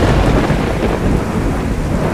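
The music cuts off, and a loud, deep rolling rumble follows over a steady rain-like hiss.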